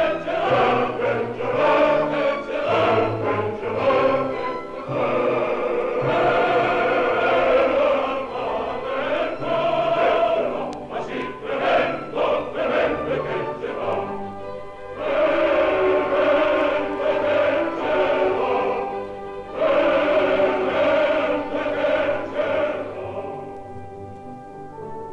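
Opera chorus singing with orchestral accompaniment, from an old mono vinyl recording.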